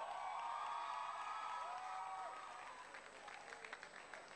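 Hall audience clapping, scattered claps growing from about two and a half seconds in, after a brief held, pitched sound.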